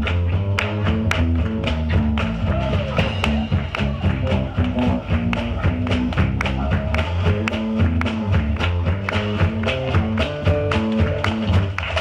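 Live band playing an instrumental passage, with an electric bass line walking through low notes under a drum kit keeping a regular beat.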